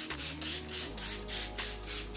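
Rapid, evenly spaced spritzes of a fine-mist setting spray onto the face, about four short hisses a second, over soft background music.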